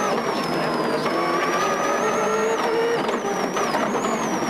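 Subaru rally car's turbocharged flat-four engine heard from inside the cockpit at speed, its revs climbing and then dropping about three seconds in, with a high whine above.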